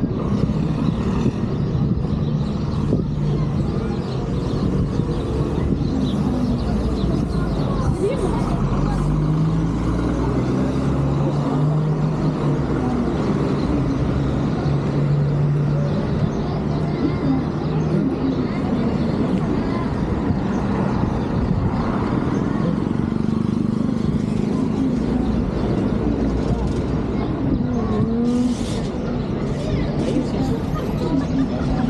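Street traffic: cars and city buses running with a steady low engine hum, mixed with people's voices.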